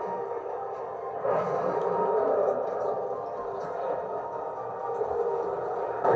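Muffled soundtrack of the anime episode being watched, playing quietly: background music of held, steady tones.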